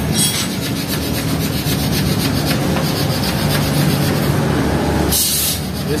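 A hand tool scraping and rubbing along the metal top edge of a removed Ford Ranger radiator, in fast repeated strokes, during radiator servicing.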